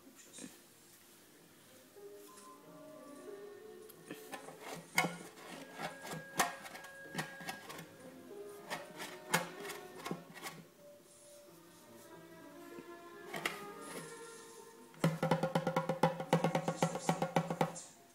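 A baby's hands slapping the skin head of a small wooden hand drum: scattered taps through the middle, then a quick run of slaps, several a second, in the last three seconds.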